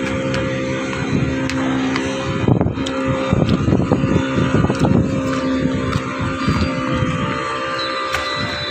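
A boat engine runs steadily with a constant low drone. Irregular low rumbles come through partway in.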